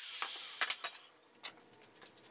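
Angle grinder spinning down after cutting steel angle iron, its high whine fading away over the first second. A few light metal clinks follow, spaced out.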